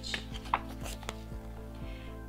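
Page of a hardback picture book being turned: paper rustling with several light taps as the page is lifted and laid flat, over quiet steady background music.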